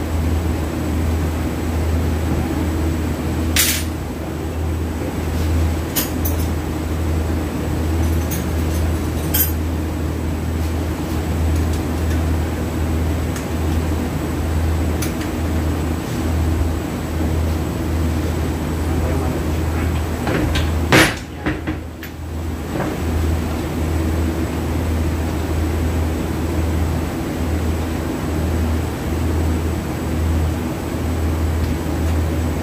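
Metal parts of a transfer case housing clicking and knocking against each other and the workbench as it is handled, a few sharp knocks spread through, the loudest about two-thirds of the way in. Under them runs a steady low hum.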